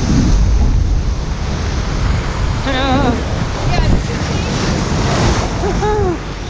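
Ocean surf crashing and washing over rocks close by, with wind rumbling on the microphone.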